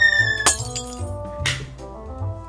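Background music with a comic sound effect: a high, slightly falling whistle-like tone ending in a sharp crash like breaking glass about half a second in, then a smaller hit about a second later.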